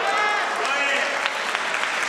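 Church congregation applauding, with a few voices calling out over the clapping.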